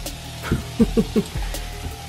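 Diced meat and egg sizzling in a frying pan, with four short pitched sounds of falling pitch in quick succession near the middle.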